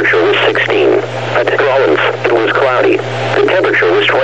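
Only speech: a NOAA Weather Radio broadcast voice reading regional temperature reports, with a steady low hum beneath it.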